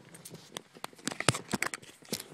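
Handling noise from a handheld camera: a quick, irregular string of small clicks and rustles, busier and louder in the second half.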